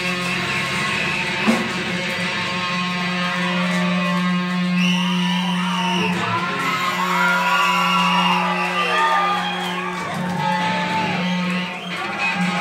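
Audience recording of a live punk band: a held, droning electric guitar note rings on while the crowd yells over it, with wavering high tones from about four seconds in and one sharp hit about one and a half seconds in.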